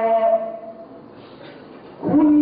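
A male reciter's voice holding the end of a long, melodic note of Quran recitation, which fades out within the first second; after a short quiet pause the next phrase begins right at the end.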